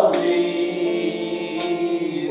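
Unaccompanied voices singing, holding one long note after a louder phrase breaks off at the start.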